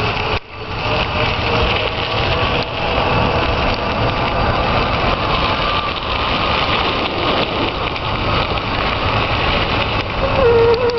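Steady rushing wind noise on the microphone and tyres rolling on a gravel trail while an electric bicycle is ridden, with a faint steady motor whine underneath. The sound drops briefly about half a second in.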